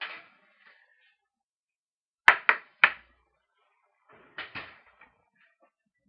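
Sharp metallic clanks and knocks of an oven door and a metal baking sheet as a tray of cookies is taken out of the oven. There is a quick cluster of three about two seconds in and two more about four and a half seconds in.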